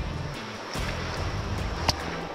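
Steady rush of a shallow, fast-flowing river, with background music underneath and a sharp click near the end.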